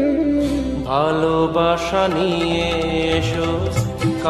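Instrumental interlude of a Bengali film song: a held melody line over steady accompaniment, with a new phrase sliding upward about a second in.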